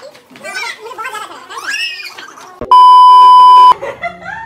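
Voices exclaim excitedly, then a loud, steady, pure beep tone about a second long cuts in and stops abruptly: an electronic bleep added in editing.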